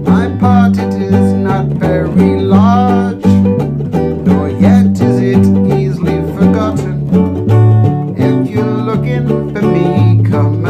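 Instrumental break in a one-man multitracked cover: acoustic guitar and ukulele strummed in a steady rhythm over a moving low bass line, with a higher gliding melody line above them.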